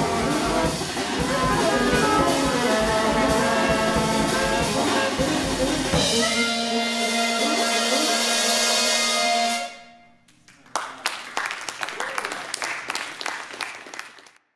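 Saxophone quartet with drum set playing a dense, clashing passage that settles into a held saxophone chord and cuts off sharply, followed by a few seconds of applause from a small audience.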